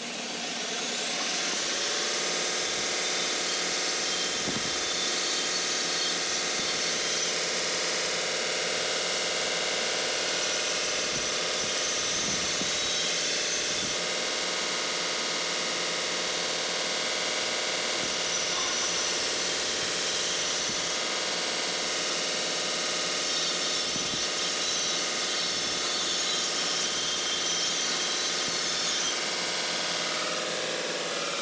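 Handheld shop power tool spinning up to a high, steady whine and running continuously while cleaning up the notched end of a chromoly tube, starting to wind down at the very end.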